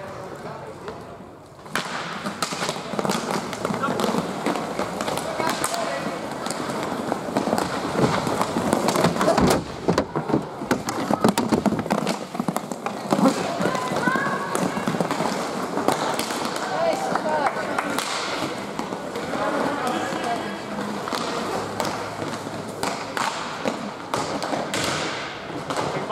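Inline hockey play in a reverberant rink: repeated sharp clacks and thuds of sticks and puck, with voices calling out. It gets suddenly louder about two seconds in.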